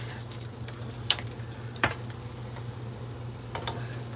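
Hot oil sizzling steadily in a pan around a frying dollop of apple-cinnamon batter, with a few light clicks of a metal spoon against the pan, the sharpest about one and two seconds in.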